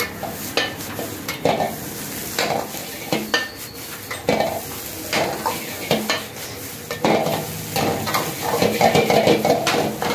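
Noodles sizzling in a wok over a high flame while a metal ladle scrapes and knocks against the wok about once a second, turning into a quick run of scraping near the end.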